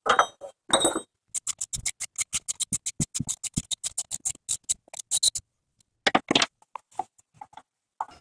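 Socket ratchet wrench clicking rapidly, about ten clicks a second for some four seconds, as it works the crankshaft pulley bolt of a Honda J35 V6; a couple of metal clanks come first and a few single clicks near the end.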